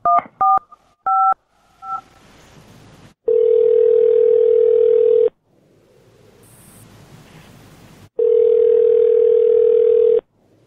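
A telephone line during a call transfer: a quick run of touch-tone keypad beeps as a number is dialed, then the ringback tone, two long rings about two seconds each and about three seconds apart, as the transferred call rings at the other end.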